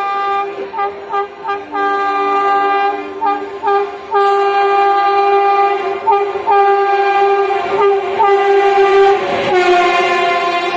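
Horn of the locomotive hauling the 12301 Howrah–New Delhi Rajdhani Express, sounded again and again as the train approaches at speed: quick short toots mixed with longer blasts of about a second each. Near the end the train's rush arrives, and the horn's pitch drops as the locomotive passes.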